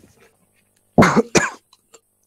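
A person coughing twice in quick succession, about a second in.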